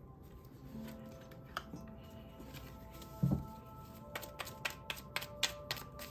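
Soft background music of held tones. About three seconds in there is a low thump, then from about four seconds in a fast run of crisp clicks: a tarot deck being shuffled by hand.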